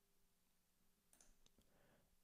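Near silence, with a few faint computer mouse clicks a little past a second in.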